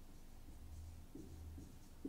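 Faint strokes of a marker writing numbers on a whiteboard, over a low steady hum.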